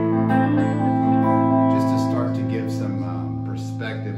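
Tom Anderson Bobcat Special electric guitar played with a clean tone on its neck pickup, a humbucker-sized P-90: chords ring and sustain, with a few fresh strums in the second half.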